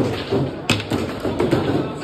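Knocks of play on a foosball table: one sharp knock about two-thirds of a second in and a couple of lighter ones.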